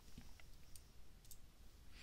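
Near silence: room tone with a few faint, separate clicks.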